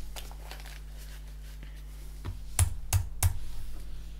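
Faint handling noise as over-ear headphones are put on, then four sharp clicks about a third of a second apart near the end as the computer is clicked to restart the paused music.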